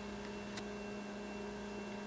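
Steady low electrical hum over quiet room tone.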